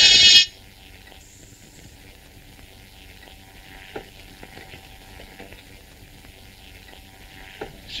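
A loud electric buzz cuts off in the first half second. After it comes the low hiss and crackle of an old film soundtrack, with a few faint clicks.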